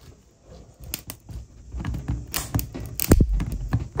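Black 3D-printed plastic parts joined with CA glue creaking and clicking as they are forced by hand to test the glue joint. Louder cracks come a little past two seconds and about three seconds in.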